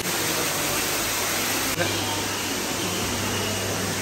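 Steady, even hiss with a low hum underneath and a brief tick a little under two seconds in.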